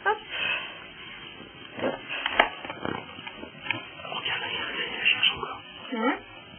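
Newborn baby grunting and fussing in short sounds while being dressed, with clothing rustling and one sharp click about two and a half seconds in.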